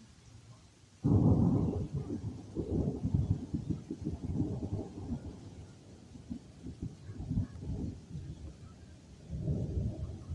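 Loud thunder: a sudden crack about a second in, then a long rolling rumble that fades over several seconds and swells once more near the end.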